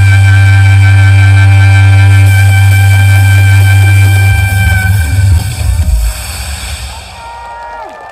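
Soprano saxophone holding one long, loud high note over a backing track with a heavy bass line: the closing note of the piece. The note cuts off about five seconds in and the backing ends a second later.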